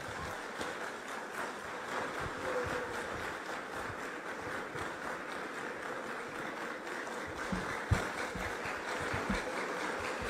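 Audience applauding steadily, many hands clapping at once, with a sharp knock about eight seconds in.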